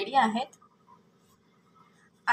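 A woman's voice says a single word in the first half second, then near silence: faint room tone.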